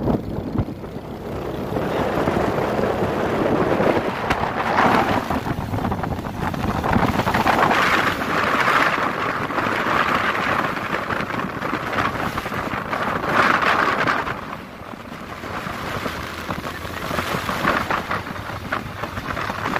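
Wind rushing and buffeting over the microphone of a moving motorcycle, mixed with its road and engine noise. The rush swells and eases in waves, dipping briefly near the end.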